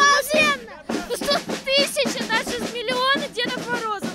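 A boy's high-pitched voice talking into an interviewer's microphone, in quick, lively phrases.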